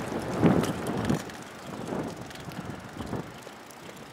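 Footsteps walking on a concrete sidewalk, soft thumps about every half second, with wind noise on the microphone and street noise behind.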